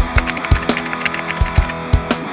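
Keyboard typing sound effect, a quick run of clicks that stops near the end, over background music with electric guitar and a beat.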